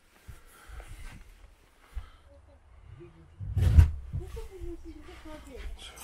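A single heavy thump a little past the middle, over a low rumble of movement, followed by a man's brief wordless murmur.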